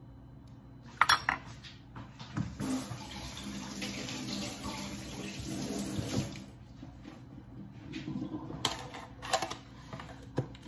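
A metal spoon clattering down on a wooden cutting board, then water running steadily for about four seconds, with a few more clinks of kitchenware near the end.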